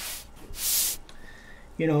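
A round wooden sign board sliding and rubbing over a cloth tablecloth as it is turned around by hand, a brief swishing rub about half a second long.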